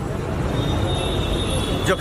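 Steady outdoor background noise of a crowded street, crowd and traffic together. The noise is dense and even through a pause in speech, and a man's voice begins again near the end.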